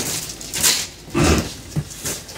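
Hands rummaging in a cardboard box of donated shoes: a few short rustles and knocks of cardboard and shoes being moved.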